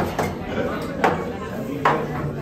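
Three sharp knocks, the last with a brief ring, over diners talking in the background.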